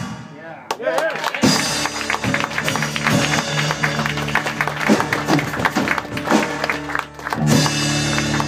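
Live rock trio of electric bass, drum kit and acoustic guitar playing loudly. The sound drops off sharply at the start, the band comes back in about a second and a half later with drum hits under held notes, and there is another brief dip near the end.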